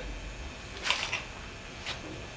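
A few short clicks from the handwheel of a beam-bending test machine as it is turned to apply load to the wood beam: a small cluster about a second in and one more near the end, over a low steady hum.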